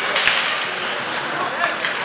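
Ice hockey in play in an arena: skates on the ice and a sharp knock of a stick on the puck about a quarter second in, with people talking in the stands.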